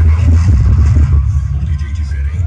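Loud music played through competition car audio systems, dominated by deep, steady bass.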